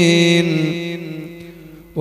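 A man's voice chanting an Arabic invocation holds one long, steady note that fades away over the second half.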